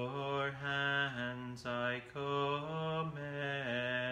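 A man chanting a liturgical responsory solo and unaccompanied, holding long level notes and stepping between them, with a brief pause for breath partway through.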